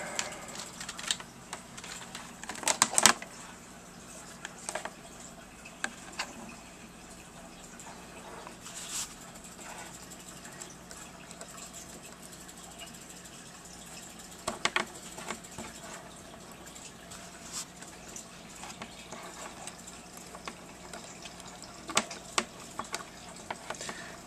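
Scattered clicks and knocks of a handheld digital multimeter and its test leads being handled on a wooden desk, the loudest a short cluster about three seconds in, over a faint steady hum.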